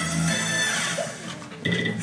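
Guitar music playing from a television, with a short bright high tone near the end.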